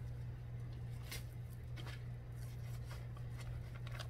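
Soft rustling of cloth and a fabric project bag being handled, a few faint brushes over a steady low electrical hum.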